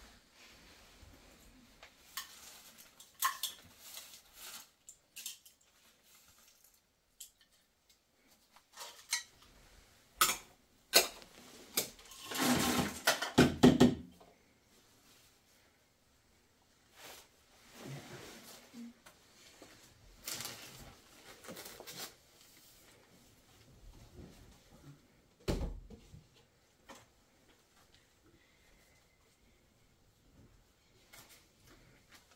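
Dishes, plates and glassware clinking and knocking as they are handled and set down on a floor cloth, in scattered bursts. The loudest is a longer clatter about halfway through, and a single dull thump comes near the end.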